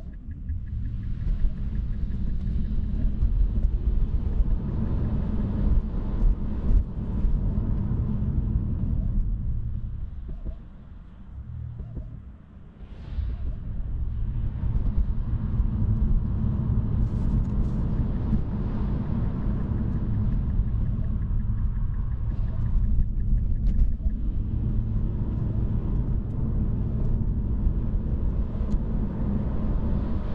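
Road and tyre rumble inside a Tesla's cabin while driving on a wet, slushy snow-covered road. There is no engine note, only a steady low drone. It eases off for a few seconds about ten seconds in, then picks back up.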